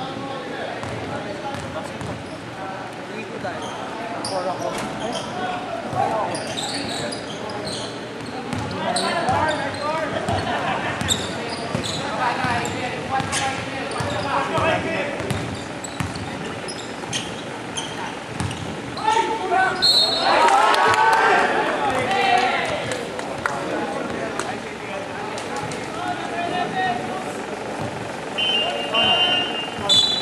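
Basketball game in a large echoing gym: a ball bouncing on the hardwood court and players' voices calling out, louder shouting about two-thirds of the way in. Short high-pitched tones sound about twenty seconds in and again near the end.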